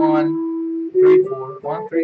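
Stratocaster-style electric guitar playing single picked notes of a pentatonic fingering with added chromatic passing tones. The first note rings for almost a second, then shorter notes step upward in pitch.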